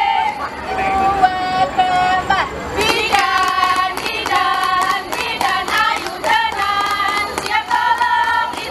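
A group of young women singing a yel-yel cheer chant together in held notes. Rhythmic hand clapping joins in about three seconds in.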